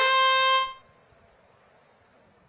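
Match-start horn from the competition field control: one steady buzzing tone of about three quarters of a second that cuts off suddenly, signalling the start of the driver-control period.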